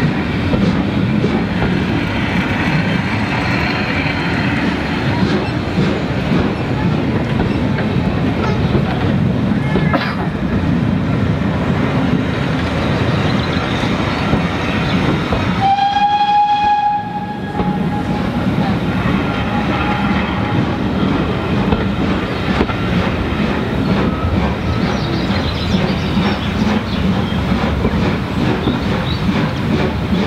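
Passenger coaches of a steam-hauled train rolling past at low speed, wheels clattering and rumbling over the rails as the train pulls out. About halfway through, a single steady high tone sounds for a second or two.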